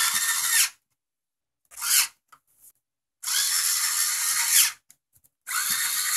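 Cordless electric screwdriver driving screws in four short whirring runs: one at the start, a brief one about two seconds in, a longer one of about a second and a half from about three seconds, and another near the end.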